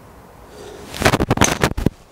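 Titleist TS3 titanium driver struck against a golf ball teed on a hitting mat: a quick run of sharp cracks and knocks about a second in.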